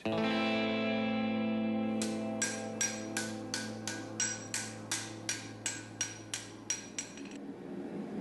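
Music: a single held, distorted electric-guitar chord that slowly fades. About two seconds in, a ringing metallic strike joins it, repeating about three times a second, and both stop near the end.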